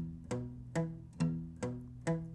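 Steel-string acoustic guitar playing a palm-muted E minor arpeggio across the sixth, fifth and fourth strings: single plucked notes about two a second, each cut short by the palm.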